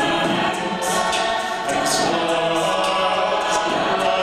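Mixed a cappella vocal ensemble singing held chords in harmony without words, with short hissing accents about once a second.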